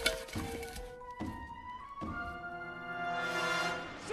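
Orchestral film score, swelling from about two seconds in into a held chord that fades near the end, with a sharp thud just at the start and a few lighter knocks after it.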